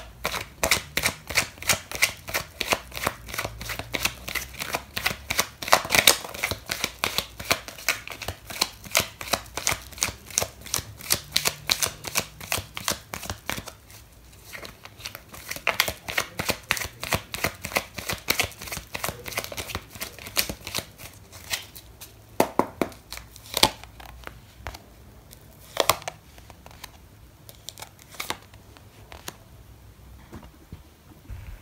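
A deck of tarot cards being shuffled by hand: rapid runs of card clicks with a short break about halfway. Then come a few separate taps as cards are drawn and laid down on the cloth.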